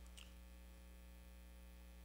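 Near silence with a steady low electrical mains hum.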